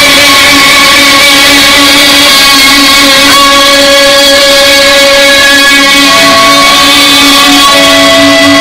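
Loud distorted electric guitar feedback: one sustained, steady tone held without a beat, with a second, higher note joining about six seconds in.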